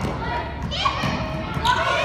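Children's voices calling out over a basketball bouncing on the floor of a large indoor gym.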